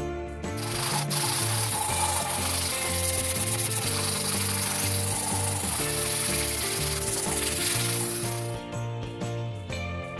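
Hand sanding along the glued-up wooden handle of a wooden katana: a steady scratchy rubbing that starts about half a second in and stops near the end, over background music.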